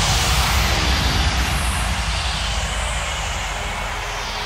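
Breakdown in an electronic dance track: a loud hissing noise sweep that slowly fades, over a low pulsing bass, with the melody and vocals dropped out.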